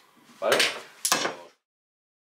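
Metal climbing hardware, a camming device and carabiners handled in gloved hands, gives a short sharp clink about a second in. The sound then cuts off to dead silence.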